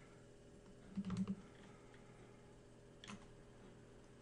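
Faint clicking at a computer: a quick cluster of clicks about a second in, then a single click about three seconds in.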